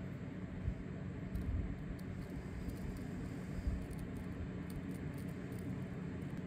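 Steady low hum of room air conditioning, with a few faint scrapes and taps as a hobby knife presses masking tape into the edge of a plastic RC wheel rim.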